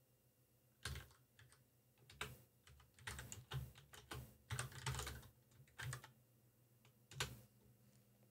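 Keystrokes on a computer keyboard, typing a short command in irregular bursts of key presses, with one separate key press near the end as the command is entered.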